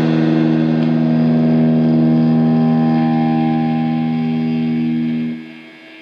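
Raw black metal recording: a held distorted electric guitar chord ringing out at the end of a song, with no drums. It stops about five seconds in, leaving a short faint tail.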